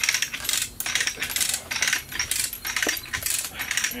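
Lever chain hoist being pumped by hand: quick bursts of ratchet-pawl clicks, about two to three strokes a second. The hoist is taking up the straps under the weight of a giant pumpkin.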